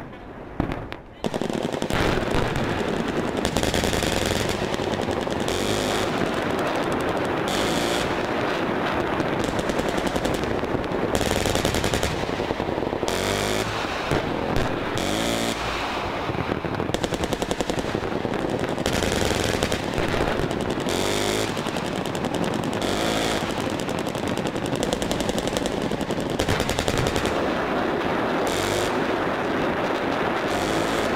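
Heavy automatic gunfire, dense and continuous, with a brief drop about a second in.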